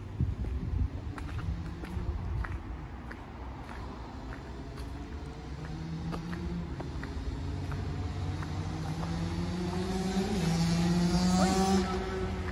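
A car engine running on a nearby street, growing louder and rising in pitch toward the end as the vehicle comes closer and speeds up, over a low outdoor rumble. Light scattered ticks of footsteps on the gravel path are heard under it in the first few seconds.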